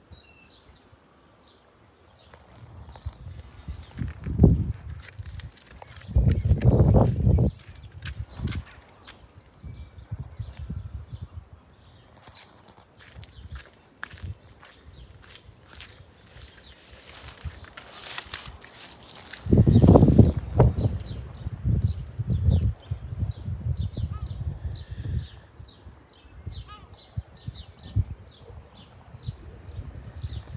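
Outdoor ambience on a handheld phone: gusts of wind rumbling on the microphone in two stronger spells, scattered footsteps and handling knocks, and faint bird chirps.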